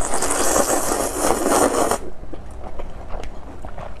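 A person slurping garlic-steamed glass noodles (vermicelli) off a scallop shell in one long slurp that stops about two seconds in, followed by soft wet mouth clicks as she chews.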